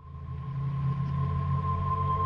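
Background music starting up: a sustained low drone with a steady higher tone held over it, swelling in over the first half second and then holding level.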